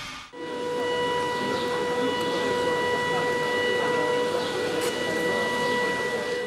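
An alarm siren sounding one steady tone over constant background noise.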